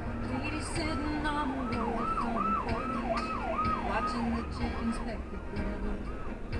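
A siren-style yelp: a tone sweeping up and down about twice a second for roughly five seconds, over music playing in the car and road noise.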